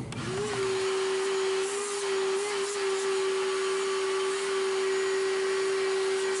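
Vacuum cleaner switched on, its motor whine rising to a steady pitch within about half a second, then running steadily as it sucks up drill shavings from around a freshly drilled hole in plywood and roadbed.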